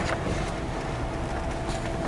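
Steady low background hum and hiss with a faint steady tone running through it, and a soft brief rustle near the end.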